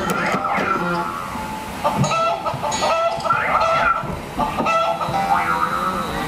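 A prop piano whose keys are pressed by a toddler, setting off a quick run of short pitched sound effects that bend up and down in pitch, some like clucking.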